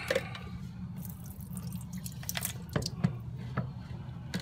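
Liquid draining from a tilted plastic beaker into a sink, with a low steady splash and scattered drips and little splats.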